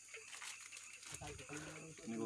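Quiet outdoor ambience with faint, distant voices of people talking, mostly in the second half, over a steady faint high hiss.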